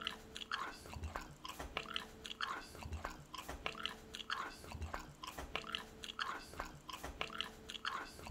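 A person chewing raw mullet sashimi close to the microphone: soft, wet chews in a steady rhythm, a little more than one a second.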